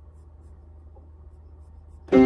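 Faint rustling and a few light clicks of someone settling at a piano keyboard, over a low steady hum.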